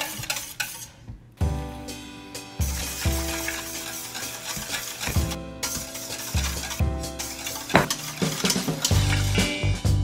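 Wire whisk beating a thin milky liquid in a stainless steel mixing bowl: rapid scraping and clicking of the wires against the metal. Background music with a steady beat plays underneath.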